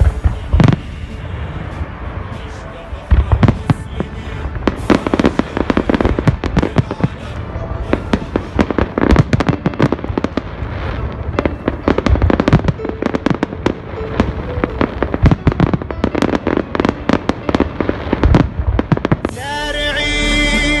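Fireworks display: a long run of sharp bangs and crackling from bursting shells and rockets, with a loud report under a second in, another about three seconds in, and dense crackling through most of the rest.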